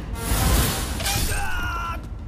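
Crash of splintering wood and bamboo, loudest about half a second in, as a spiked bamboo trap swings in, with film score music under it.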